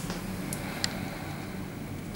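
Room tone: a steady low hum with faint background noise, and two small ticks about half a second and just under a second in.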